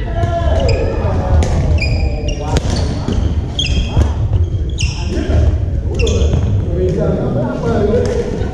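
Badminton play on a hardwood gym floor: sharp racket strikes on the shuttlecock and short, high-pitched sneaker squeaks as players lunge and shift, with the squeaks clustered around the middle. Voices chatter throughout over a steady low hall rumble.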